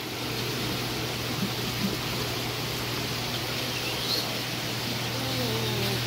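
Steady hum and hiss of aquarium pumps and circulating water in a saltwater fish-tank system.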